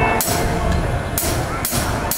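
Live band's drum kit playing a short break: kick-drum thumps and cymbal hits, with the melody instruments mostly silent.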